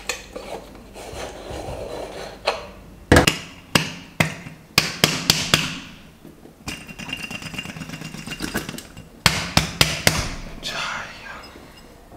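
Metal parts of a stovetop moka pot knocking and clattering against each other and a steel sink as the pot is taken apart and rinsed. There are clusters of sharp knocks with splashing water between them.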